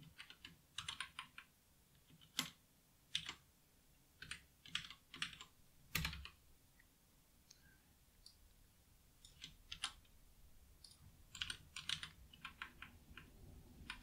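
Quiet typing on a computer keyboard in short bursts of keystrokes, with one heavier key strike about six seconds in, a brief pause after it, then faster typing near the end.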